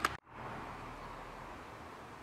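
Faint, steady ambient background noise with no distinct event, broken by a brief dropout just after the start where the recording is cut.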